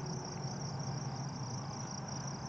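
Steady high-pitched insect trill, finely pulsing, with a faint low hum beneath it.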